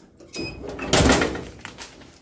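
Clamshell heat press being opened after a transfer press: a single loud mechanical clunk about a second in as the upper platen swings up off the shirt, fading out over the next second.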